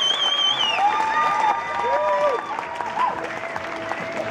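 Theatre audience applauding after a concert, with cheers. A loud, warbling whistle rises above the clapping in the first second.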